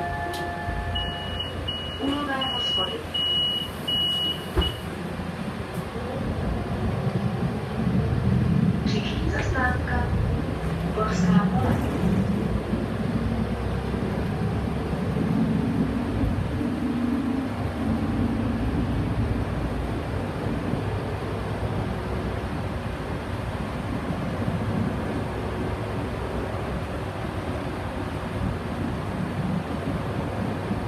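Interior of a Solaris Urbino 15 city bus pulling away and driving on: its engine and road noise rise after a few seconds and then run steadily. A short series of high beeps sounds in the first few seconds, and brief voices come through a few times.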